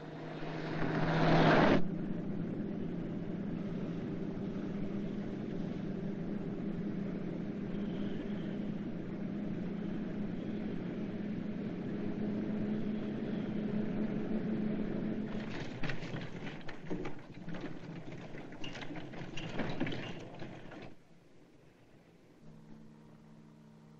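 Car engine running steadily at speed, opening with a loud rush for about two seconds. In the last five seconds a scatter of sharp clicks and knocks sounds over it.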